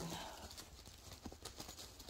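Faint, scattered light clicks and taps of items being handled and rummaged through inside a quilted fabric bag.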